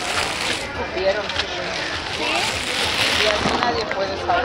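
Clear plastic bag crinkling in two bursts of rustle, one at the start and a longer one from about two seconds in, over the chatter of voices around a market stall.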